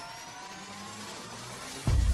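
Synthetic intro sound effect: a rising riser whoosh, several thin tones climbing slowly in pitch over a hiss. A sudden deep bass impact cuts in just before the end.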